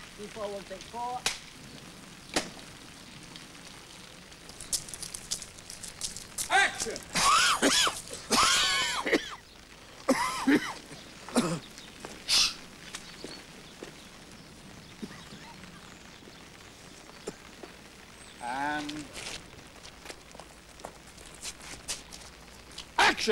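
Indistinct voices in short bursts, loudest and calling out in the middle, over a faint steady hiss of rain. A single sharp clack comes about two seconds in.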